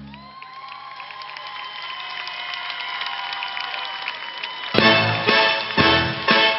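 A song's backing track ends and the audience applauds and cheers; about three-quarters of the way through, new music starts with a steady beat of roughly two pulses a second.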